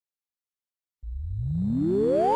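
Silence, then about a second in an electronic tone starts low and sweeps steadily upward in pitch: a rising synthesized sweep effect.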